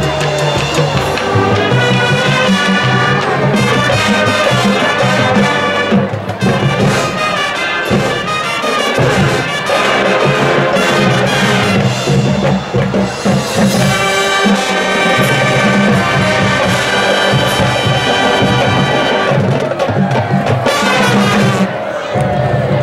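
High school marching band playing brass-led music, with trumpets and trombones sustaining chords, loud throughout, with a brief break just before the end.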